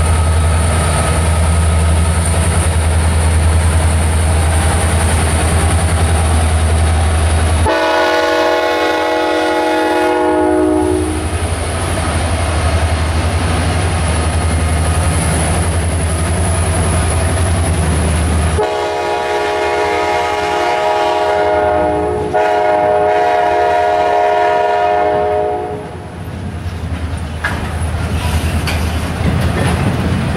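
Diesel locomotives of an intermodal freight train rumbling past, led by KCS EMD SD70ACe units, followed by the steady rolling clatter of stack cars. The locomotive's multi-note air horn sounds twice, a short blast about a quarter of the way in and a longer one just past the middle.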